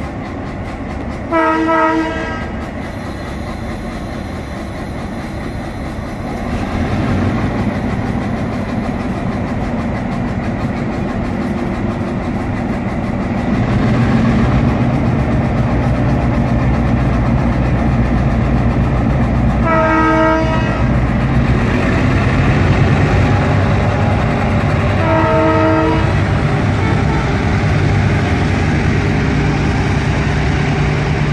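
Diesel locomotive engine running and throttling up as the train gets moving, its rumble growing louder about six seconds in and again near the middle and then holding steady. A multi-note air horn sounds three times: a short blast near the start and two blasts of about a second each, two-thirds of the way through.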